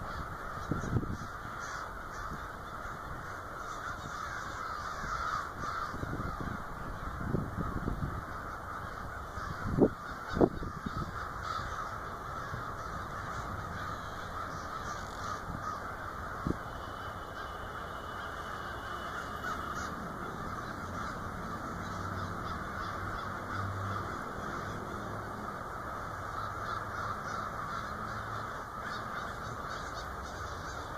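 A large flock of crows cawing as they fly in overhead: a dense, continuous chorus of many overlapping calls. Low thumps run underneath, the loudest a pair of sharp knocks about ten seconds in.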